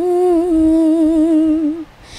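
A woman singing unaccompanied, holding one long note with a slight waver that stops shortly before the end.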